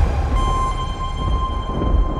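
Deep, steady rumble of a volcanic eruption with a few thin sustained tones above it. The rumble eases slightly about a second in.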